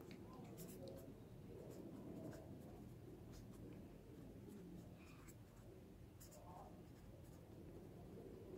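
Faint scratching of a pen writing by hand on a sheet of paper, in short irregular strokes.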